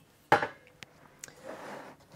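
Handling of an opened metal network-switch chassis on a desk: a sharp knock about a third of a second in, two light clicks, then a short scraping rustle near the end.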